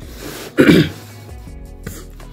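A man clears his throat once, briefly and loudly, about half a second in, over quiet background music.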